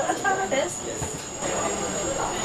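Indistinct voices over a steady background hum of a restaurant dining room. The voices are heard mostly in the first moment. A faint high-pitched steady whine runs underneath.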